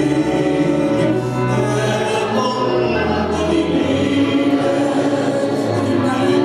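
A man and a woman singing a Hungarian nóta together as a duet, with long held notes over a band accompaniment with a moving bass line.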